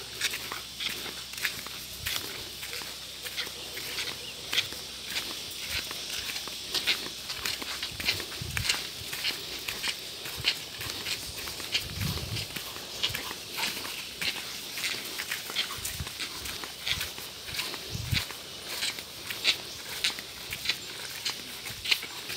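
Footsteps of several people in sandals walking on a dirt trail, a steady walking rhythm of short scuffs over a faint constant high hiss, with a few soft low thumps.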